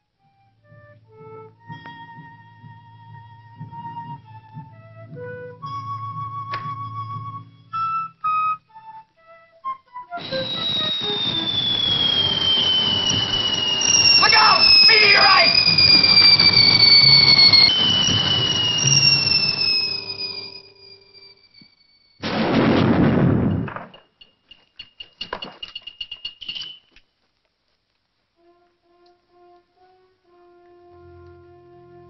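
Film soundtrack: sparse held musical notes, then about ten seconds in a loud noisy passage with two long, slowly falling whistling tones, followed by a short loud burst of noise and a few faint high tones near the end.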